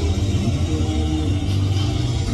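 Soundtrack of a horror-film clip played through the tram's video-screen speakers: loud, distorted, guitar-like music mixed with chainsaw noise, a steady low drone.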